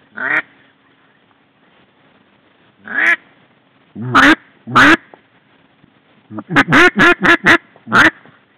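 Duck call blown close by, giving loud single quacks spaced a second or more apart, then a quick run of about six quacks near the end.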